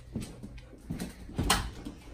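A dog moving about close by: a few short, sharp knocks and rustles, the loudest about one and a half seconds in.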